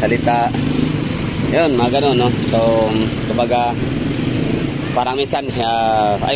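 Motorcycles and motorcycle-sidecar tricycles running in street traffic, a steady low engine hum, with a man talking over it in short bursts.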